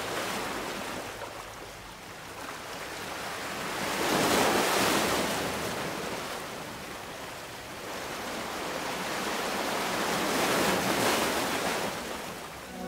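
Ocean surf: waves breaking and washing up the shore, rising and falling in slow surges, loudest about four seconds in and again near the end.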